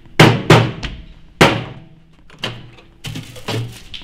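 A run of sharp thuds and bangs on a countertop microwave oven as it is handled and knocked, about six of them, irregularly spaced, each ringing briefly in a small hard-walled room.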